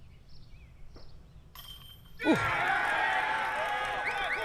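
A made disc golf putt hitting the metal chains of the basket with a brief jingle about a second and a half in, followed at once by a spectator crowd breaking into loud cheers and shouts.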